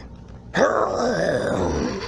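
A cartoon character's long groaning cry, starting about half a second in and lasting over a second, with its pitch bending as it goes.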